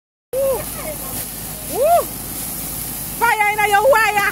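Burgers sizzling on a gas grill as flames flare up, a steady hiss. Over it, a person's voice gives a short call, then a rising-and-falling exclamation, then a held, wavering sung note near the end.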